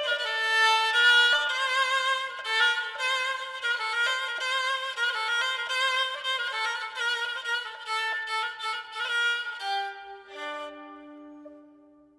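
Solo kamancheh, a Persian spike fiddle made by master Karbalaei, bowed through a melodic phrase of quick ornamented notes with vibrato. About ten seconds in, the phrase settles onto a long low note that fades away.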